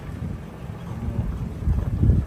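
Wind buffeting the phone's microphone: a low, rumbling noise that swells in gusts, loudest near the end, with the low road noise of a slow-moving vehicle beneath it.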